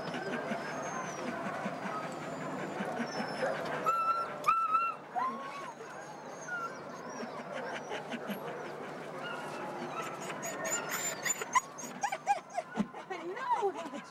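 Sled dogs yipping, whining and barking together, with many short rising and falling calls overlapping, and a burst of rapid high yips a few seconds from the end. This is the excited clamour of harnessed sled dogs eager to run while being hitched up.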